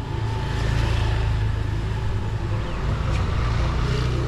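Motor scooter engine running as it rides past close by, a steady low engine note.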